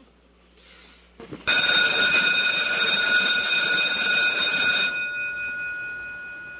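Electric school bell ringing: it starts abruptly about a second and a half in, rings loud and steady for about three and a half seconds, then stops and its tone dies away.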